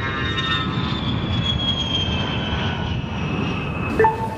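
Passenger jet airliner's engines running on the runway: a steady rushing noise with a high whine that slowly falls in pitch.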